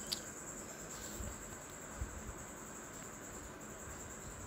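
Faint room noise with a steady high-pitched whine running underneath, and a couple of soft taps about one and two seconds in.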